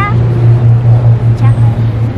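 A steady low-pitched drone with a fluttering pulse, like an engine running nearby, with a child's voice briefly at the start.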